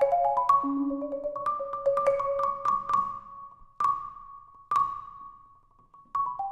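Solo marimba, a Marimba One concert instrument played with four yarn mallets: a quick run of repeated struck notes on two pitches an octave apart, with one lower note. Then come two single notes about a second apart, the last left to ring and die away.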